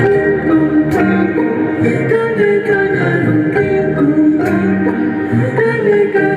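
Live music played in concert: a sung melody over instruments, held notes and a moving low part, heard from the audience.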